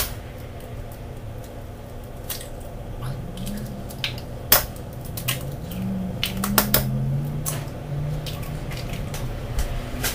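Eggs being cracked against a stainless steel mixing bowl: a few sharp knocks and clicks, the first the loudest.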